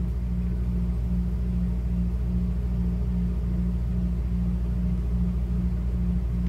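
A steady low background hum, with one of its tones pulsing evenly two or three times a second.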